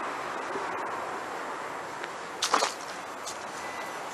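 A steady background hiss, with a brief scraping rustle a little past halfway that is the loudest sound, and a few faint ticks.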